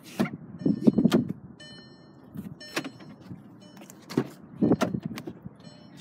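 Rear passenger door of a 2010 Volkswagen Tiguan being opened by hand: a cluster of clunks and clicks from the handle and latch about a second in, then more knocks and handling noise around four to five seconds in.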